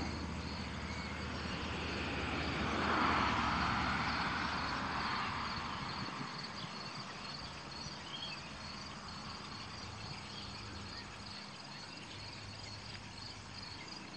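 Insects, crickets by their sound, chirping steadily in a high, pulsing trill, while a passing vehicle's rush of noise swells to its peak about three seconds in and fades away.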